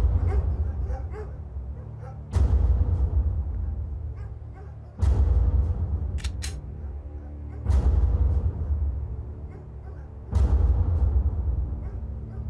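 Tense dramatic background score: a deep drum hit about every two and a half seconds, each fading slowly, over a low sustained drone.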